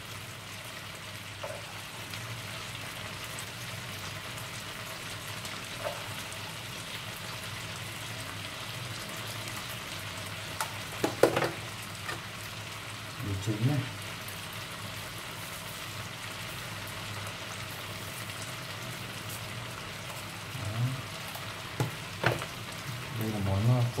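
Large freshwater shrimp sizzling steadily in hot oil in a stainless steel frying pan after being seasoned with salt and stock powder, with a couple of brief vocal sounds near the middle.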